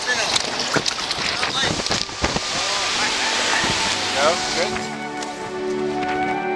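Wind buffeting the microphone and water noise from a kayak at the shoreline, with a few sharp knocks and background music underneath; the music comes clearly to the fore near the end as the noise drops away.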